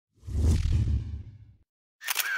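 A whoosh sound effect with a deep low boom. It swells in quickly and fades away over about a second and a half.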